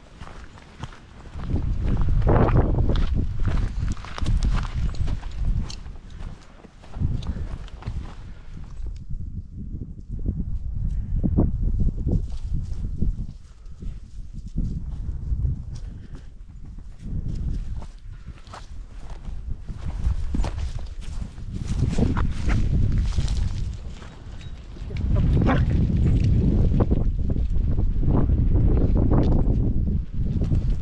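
Footsteps on a rough dirt path with dogs moving about, under a heavy low rumble on the microphone that surges and drops. It is quieter for a few seconds about a third of the way in, and loudest near the end.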